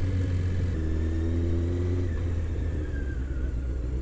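Honda CBR600's inline-four engine running steadily at low revs, a steady low drone. Its note thickens for about a second, starting just under a second in.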